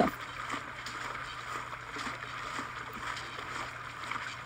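Steady forest ambience sound effect: an even background hiss with no distinct events.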